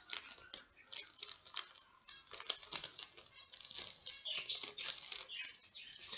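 Thin plastic packaging crinkling and rustling in quick irregular bursts as it is unwrapped by hand.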